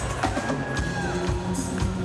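Live band music with a steady drum beat, about two beats a second, under sustained guitar and synth tones.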